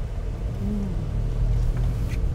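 Car cabin rumble from a car driving, low and steady, heard from inside the car, with a brief hummed "mm" from a passenger about a second in.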